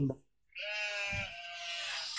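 A high, voice-like cry held at a nearly steady pitch, starting about half a second in after a brief silence.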